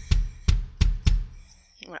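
Bass drum pedal beater striking a Roland electronic kick pad four times in quick succession, about three strokes a second, giving deep kick-drum thuds that stop a little past the first second.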